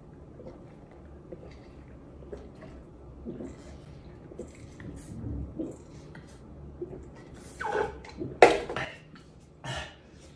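Faint sipping and swallowing through a straw, then three loud coughs and splutters near the end, the middle one the loudest. The coughing is a reaction to a sour drink of balsamic vinegar mixed into sparkling water.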